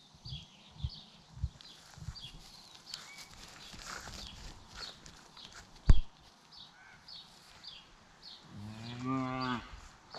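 A cow moos once near the end, a single low call of about a second that drops in pitch as it ends. Short high chirps repeat over it, and a single sharp knock about six seconds in is the loudest sound, with a few dull thumps in the first two seconds.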